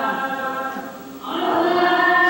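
Recorded Sufi dhikr: a group of voices singing ecstatic devotional poems of love for God and the Prophet. The singing fades briefly about a second in, then comes back strongly.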